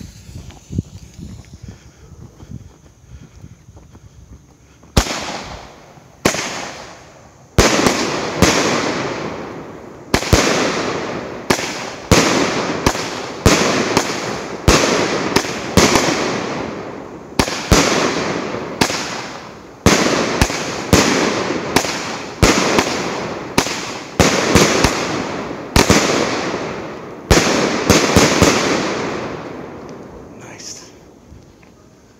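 A 19-shot, 200-gram daytime smoke cake firework firing. After about five quieter seconds while the fuse burns, it fires a string of loud, sharp bangs, roughly one a second for over twenty seconds, each trailing off in an echo.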